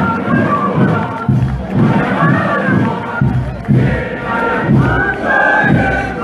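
A large crowd shouting and chanting together in a steady rhythm, a strong beat about every three-quarters of a second.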